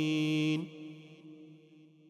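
A long, steady chanted vocal note closing the recitation, cut off about half a second in, followed by a reverberant echo that fades away.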